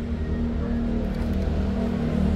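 A motor vehicle's engine running close by in street traffic: a steady low hum.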